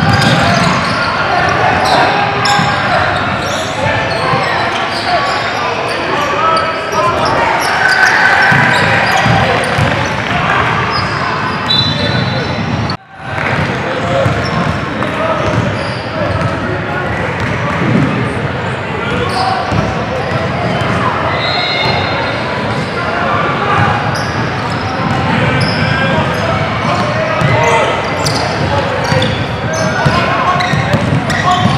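Basketball game in a large gym hall: a ball bouncing on a wooden court among players' and spectators' voices, all echoing in the hall. The sound cuts out briefly just under halfway.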